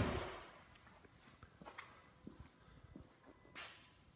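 A pickup truck door shut with a solid thud, its echo dying away in the first half second, then faint footsteps on a hard showroom floor with a brief soft rustle near the end.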